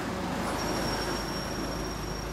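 Steady low rumble of vehicle engines and road traffic, with a thin, steady, high insect drone joining about half a second in.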